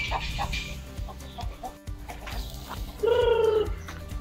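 A chicken calls once, a single pitched call of just under a second about three seconds in, over background music.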